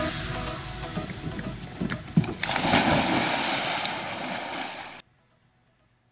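Steady rushing outdoor noise, like surf or wind on a phone microphone, with a few knocks. It grows louder about two and a half seconds in and cuts off abruptly about five seconds in.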